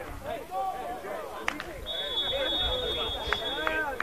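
A referee's whistle blows one steady, high note for nearly two seconds, ending a converted extra-point attempt. Players shout on the field behind it, and there is a single sharp knock just before the whistle.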